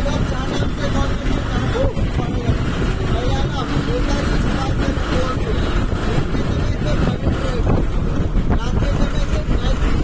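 Steady road and engine noise from inside a moving bus, with wind buffeting the microphone through the open window. Faint voices sit underneath.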